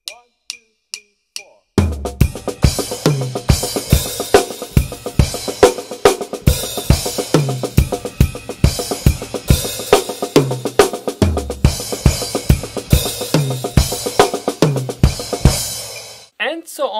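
Four short evenly spaced clicks counting in, then a drum kit played fast at 140 BPM: a continuous accented triplet sticking exercise improvised around the cymbals, toms, snare and bass drum.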